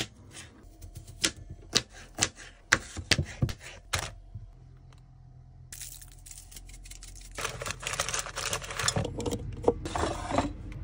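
Knife chopping a potato on a plastic cutting board: sharp, irregular knocks about two a second for the first four seconds. From about six seconds in there is a steady hiss.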